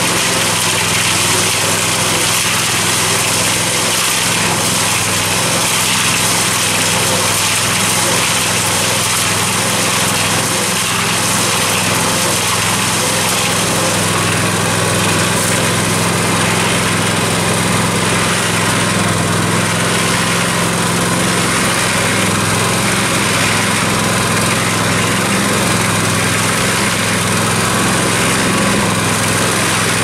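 Small single-cylinder Harbor Freight gasoline engine running steadily, driving a cement mixer's turning drum.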